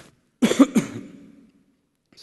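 A man coughing twice in quick succession about half a second in, with his hand over his mouth.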